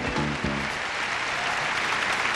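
Audience applause, a steady even clatter, with held notes of a short music cue dying away in the first half second.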